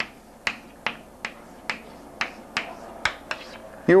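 Stick of chalk tapping and clicking against a chalkboard while words are written, about nine short, sharp taps at roughly two a second.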